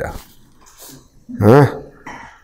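A man's brief wordless vocal sound about a second and a half in, its pitch rising then falling, between quiet stretches.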